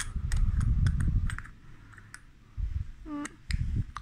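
Small cosmetic jar and its lid handled in the hand: a few sharp clicks and low handling thumps as the lid is worked on but won't close.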